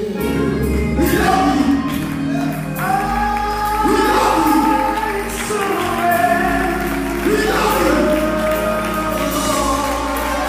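Live gospel music: a man singing into a handheld microphone over choir and instrumental backing, with long held notes.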